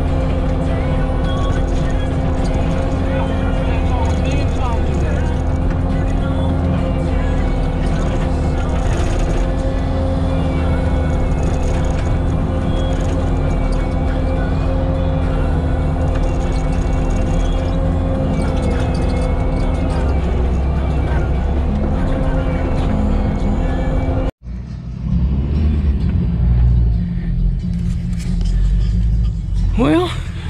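Bobcat T650 skid steer's diesel engine running steadily under load with the Diamond disc mulcher, a constant-pitched drone over a deep rumble. It cuts off abruptly about three-quarters of the way through, giving way to an uneven rumbling.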